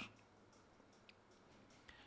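Near silence: faint room tone with a single small click about halfway through.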